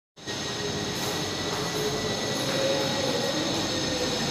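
Steady background hum and hiss in a room, with faint steady high-pitched tones and no distinct events.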